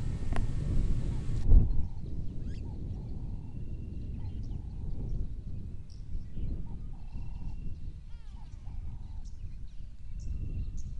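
Outdoor bush ambience: a steady low rumble with scattered faint bird chirps and calls, and a single thump about a second and a half in.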